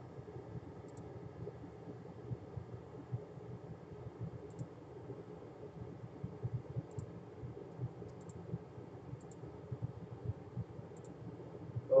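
Faint, scattered small clicks, about six spread over the stretch, over a low steady room noise.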